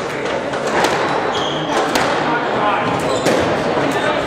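Squash ball being played: sharp, irregular cracks of the ball off rackets and the court walls. Under them runs a steady murmur of spectators talking in a large, echoing hall.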